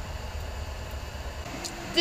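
Steady low rumble with a faint hiss, no distinct events. A voice begins softly near the end.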